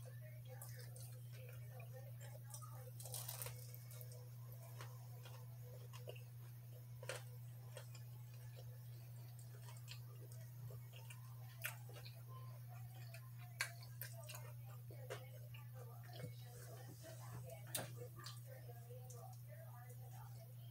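Chewing of sweet potato fries close to the microphone: scattered soft mouth clicks and smacks, a few sharper, over a steady low hum.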